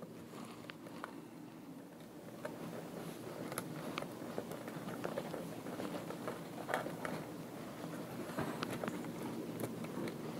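A bundle of power-supply output wires being handled and trimmed with small hand cutters: continuous rustling of wire and sleeving, with scattered sharp clicks as leads are snipped.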